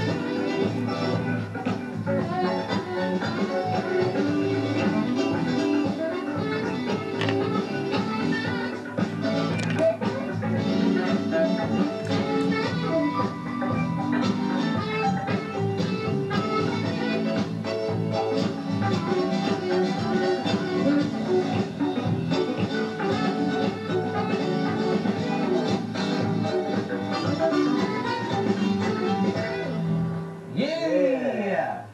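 Live band playing an instrumental jam with saxophone, keyboards, electric guitar and bass guitar, continuous throughout.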